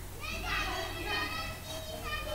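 Children's voices chattering and calling in the background, several high voices overlapping, over a steady low hum.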